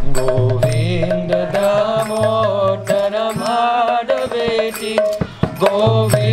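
A man singing Sanskrit devotional prayers in a slow, melodic chant, his held notes gliding in pitch, over low sustained accompanying tones and regular percussion strokes.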